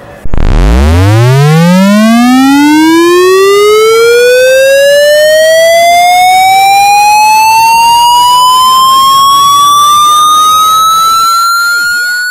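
A loud, buzzy electronic tone cuts in abruptly and glides steadily upward in pitch, from a deep hum to a high whine, over about twelve seconds.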